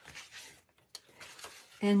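Paper and cardstock being handled and shuffled on a cutting mat: soft rustling with a light tap about a second in.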